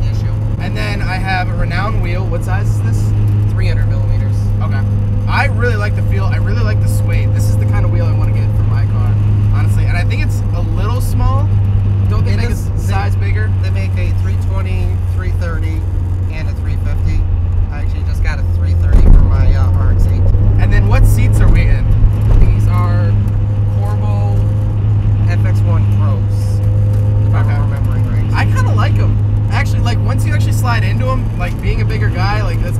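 Steady in-cabin drone of a 1995 Mazda Miata's turbocharged 1.8-litre four-cylinder while driving, holding a constant engine speed, with people talking over it. A little past halfway the drone dips briefly, then swells louder for a few seconds before settling again.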